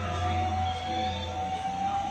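Film soundtrack music playing from a television over the opening title card: one long held note that rises slightly, over a steady low drone.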